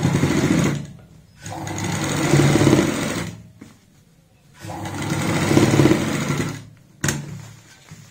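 Sewing machine stitching in three short runs with pauses between, topstitching a patch pocket onto a capri's front panel. A single sharp click comes near the end.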